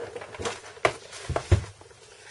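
Handling noise from a mains lead and its plug being taken out of a cardboard box: a few short clicks and knocks, the two heaviest about a second and a half in.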